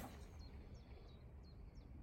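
A golf iron striking a ball off the tee: one sharp click right at the start. Faint, repeated bird chirps follow over quiet outdoor background.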